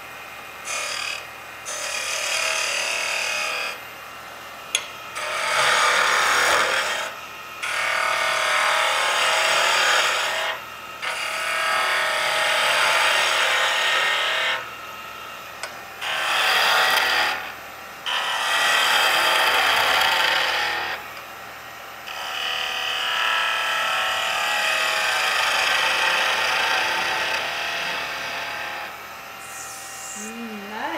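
Skew chisel cutting a wooden tool handle spinning on a wood lathe: a steady hiss of shavings coming off in a series of passes a few seconds long, each broken by a short pause as the chisel is lifted and repositioned. These are planing cuts that leave a sheen on the wood.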